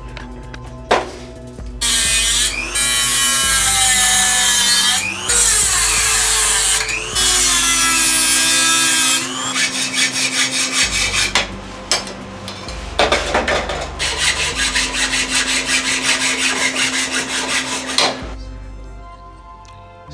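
Hacksaw cutting metal bar stock held in a vise: a long stretch of loud, continuous rasping, then quick, even back-and-forth strokes that stop near the end. Background music plays underneath.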